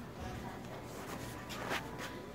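Footsteps on a tiled floor and indistinct voices over a steady background hum, with a short rustle of handling noise near the end.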